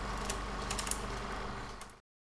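Old film projector sound effect: a steady mechanical whirr and hum with scattered crackling clicks, fading out quickly near the end.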